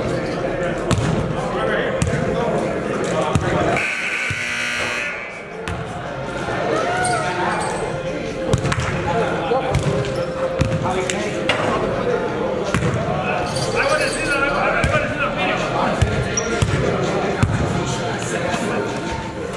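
Basketballs bouncing irregularly on a hardwood gym floor, with indistinct voices of players echoing in a large hall.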